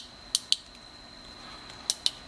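Small sharp plastic clicks from a battery-operated lantern's light module and housing being handled, coming in close pairs: two about a third of a second in and two more near the end.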